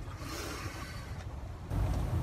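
Low outdoor background rumble with no distinct event, stepping up in level near the end.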